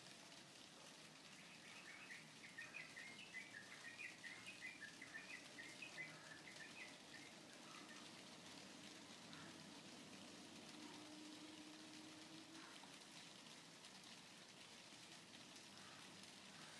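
Near silence with a faint steady hiss. From about two seconds in, a faint run of rapid high chirps, about five a second, lasts some five seconds. A faint low hum comes in briefly later.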